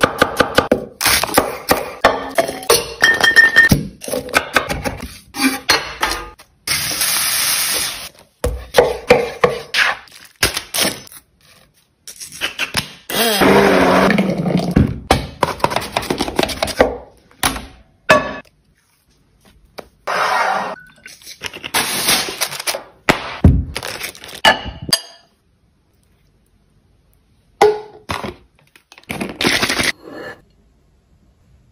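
Close-up kitchen prep sounds: a chef's knife chopping onion on a wooden cutting board in runs of quick, sharp knocks, and later a yellow squash being sliced on a hand mandoline. The sounds come in separate bursts with brief silences between them.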